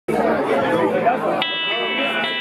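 Audience chatter, then about a second and a half in the live rock band comes in with a sudden, steady, high ringing chord that holds while the chatter goes on underneath.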